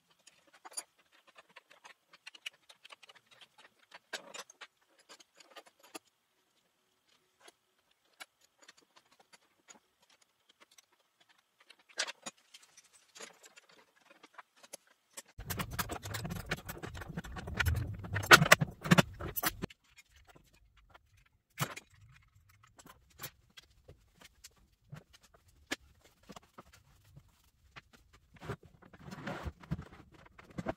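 Small steel hardware clicking and clinking as bolts, nuts and a steel caster bracket are handled and fitted together. About halfway through comes a louder stretch of about four seconds of rattling and knocking.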